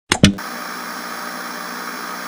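Steady television-static hiss, the sound effect of a VHS-glitch title card, opened by two sharp loud pops in the first quarter second.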